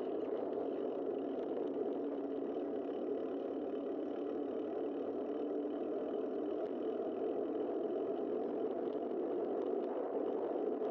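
Steady, muffled rush of wind and tyre noise on a bicycle-mounted camera while riding, even throughout with no distinct events.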